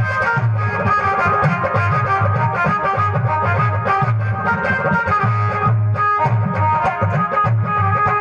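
Harmonium playing a sustained reedy melody over a steady low drum beat, amplified through a PA system.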